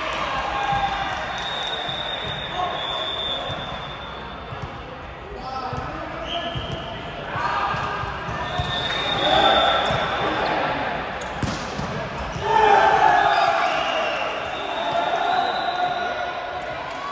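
A volleyball bouncing on the hard court floor now and then, among the voices of players calling and talking in a large, echoing sports hall. The voices are loudest in two spells, about halfway through and after about twelve seconds.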